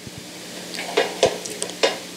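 Soft rustling and a few light knocks close to a handheld microphone, the sound of the microphone and notes being handled, over a steady low electrical hum.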